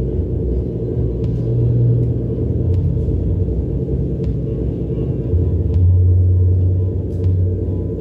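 Live electronic drone music: a dense, low sustained drone with held deep tones that swell twice, and a few sharp clicks scattered over it.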